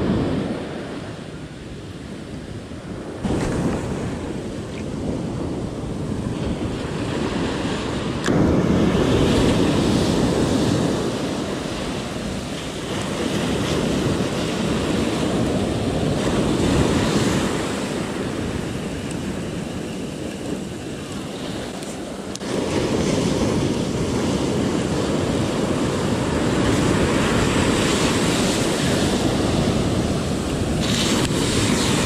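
Ocean surf breaking and washing up a sandy beach, with wind buffeting the microphone. The noise swells and eases in long surges, turning suddenly louder about eight seconds in and again a little past twenty-two seconds.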